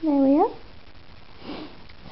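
A short wordless hum from a person, dipping and rising in pitch, then a sniff about one and a half seconds later.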